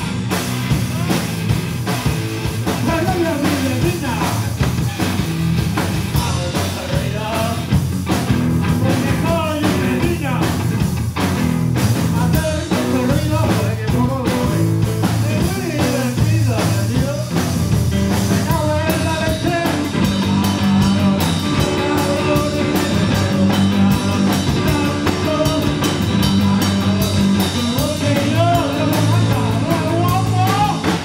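Loud live rock band: electric guitars and a drum kit with a lead singer at the microphone.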